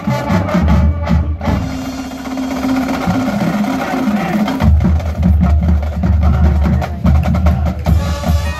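Marching band playing its field show, heavy on drums and percussion. The low drums drop out about a second and a half in under a held low note, then come back in strongly a little past the middle.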